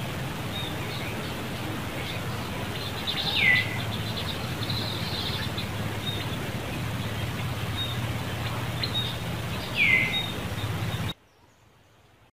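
Outdoor ambience of birds chirping over a steady low hum. Two loud, short calls swoop down in pitch, one a few seconds in and another near the end, and the sound cuts off abruptly just before the end.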